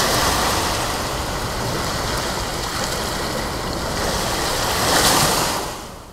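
Ocean surf breaking and washing on the beach: a steady rush that swells near the end and then dies away.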